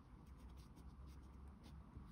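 Faint scratching of a felt-tip pen tip on paper, in a string of short strokes as a word is written out.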